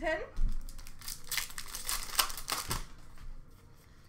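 Trading cards being handled and sorted by hand: a run of light flicks and clicks as cards are slid and set down on a stack on a glass countertop, with a few sharper taps, thinning out in the last second.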